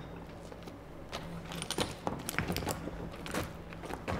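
Quiet film-set ambience: a low steady hum under scattered light clicks and rattles.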